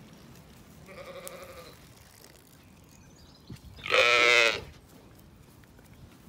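Zwartbles lambs bleating twice: a softer bleat about a second in, then a loud, wavering bleat about four seconds in.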